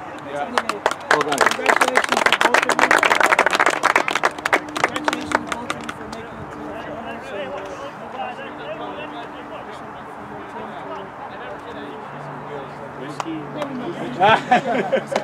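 A small group of people clapping hands for several seconds. The clapping dies away about six seconds in, leaving a low murmur of voices.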